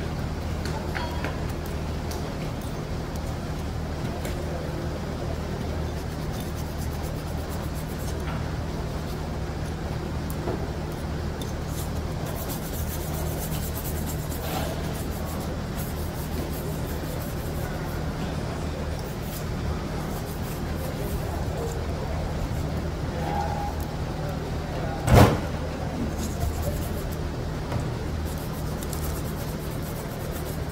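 Small steel parts of a Toyota Hilux free-wheel hub being handled and fitted by hand, with faint metallic clicks over a steady low hum. A single sharp metallic snap about 25 seconds in is the loudest sound.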